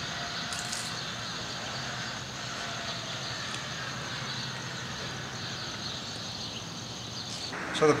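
Steady low outdoor background noise, an even faint hiss with no distinct event and no clear rise or fall as the electric truck drives past.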